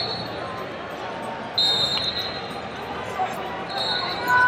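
Referee whistles blowing short, shrill blasts in a large hall, one about a second and a half in and another near the end, over the steady hubbub of a crowd.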